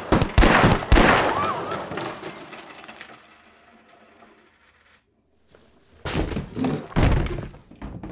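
Sharp, heavy impacts as a wooden card table is kicked and a pistol fires, ringing on and fading over about four seconds. After a brief silence, a second cluster of heavy crashes as a body and wooden chair fall to the floor.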